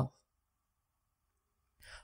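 The end of a spoken word, then near silence, then a short in-breath by the narrator near the end, before the next sentence.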